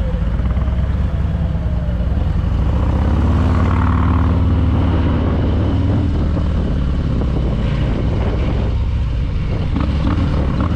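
2020 Harley-Davidson Fat Boy's V-twin, fitted with a Screamin' Eagle Stage IV 117 kit, running under way. It pulls harder about three seconds in, then eases off, with wind rush over the microphone.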